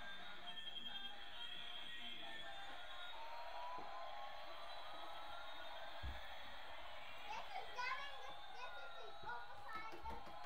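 Small LED-lit toy drone's propellers whirring in flight, a steady high buzz with a tone that slowly climbs and falls as the throttle changes. A brief low thump comes about six seconds in.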